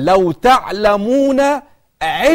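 Only speech: a man's voice lecturing.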